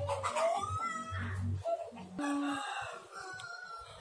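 A rooster crowing faintly, with rising calls in two stretches.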